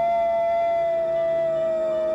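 A wolf howling: one long, smooth howl that rises a little as it begins, then holds and slowly sinks in pitch, over other faint steady tones.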